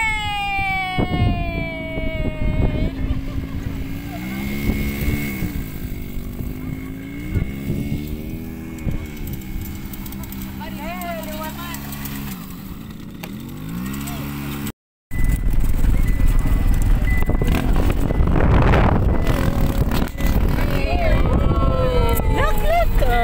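Off-road vehicle engine revving up and down in slow swells as it rides over sand dunes. After a short dropout, a loud, steady rushing noise of riding with wind on the microphone takes over.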